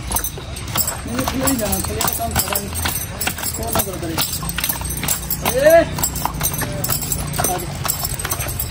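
A horse's hooves striking hard dirt ground in a quick, uneven run of clops as it prances in place on a lead.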